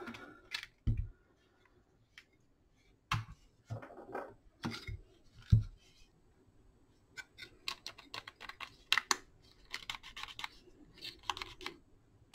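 Scattered clicks and light knocks of the opened Ridgid Gen5 drill's plastic housing and parts being handled. A few duller knocks come in the first half, and quicker clusters of small clicks follow in the second half.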